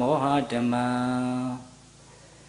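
A Buddhist monk's voice chanting into a microphone in a melodic recitation; about half a second in he holds one syllable on a steady pitch, and it stops about a second and a half in, leaving a pause near the end.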